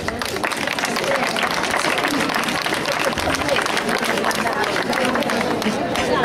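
Audience applauding, a dense patter of many hands clapping that starts right after a name is called, with crowd chatter underneath.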